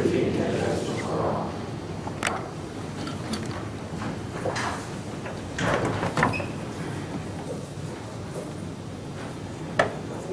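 A room of people sitting back down: chairs shifting with scattered knocks and thumps, the sharpest about six seconds in and just before the end. Voices are heard briefly at the start.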